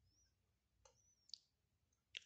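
Near silence with faint squeaks of a felt-tip marker writing on paper, and one soft click late on.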